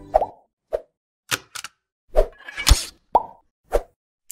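Sound effects of an animated logo intro: a string of about eight short pops and clicks with silence between them, the loudest a little under three seconds in.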